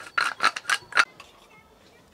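Hand spice mill being twisted to grind seasoning: a quick run of short grinding crunches over the first second, then it stops.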